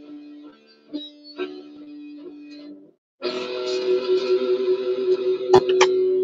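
Guitar played in single sustained, ringing notes. About three seconds in the sound cuts out for a moment, then returns louder and fuller, with two sharp clicks near the end.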